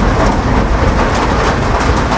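A loud, steady rumbling noise with hiss, with no clear pitch or rhythm.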